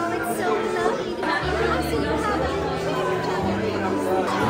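Chatter of many voices in a busy restaurant dining room.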